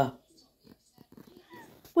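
A Norwegian Elkhound making faint, short vocal noises, with a couple of brief high pitched notes about one and a half seconds in.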